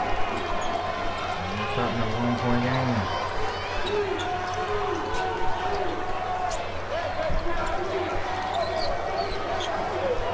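A basketball being dribbled on a hardwood gym court, with scattered short knocks and sneakers squeaking near the end, over the steady murmur of a crowd in a large hall.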